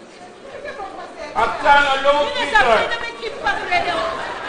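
Speech only: actors' voices on a stage in a large hall, loudest and most raised in the middle.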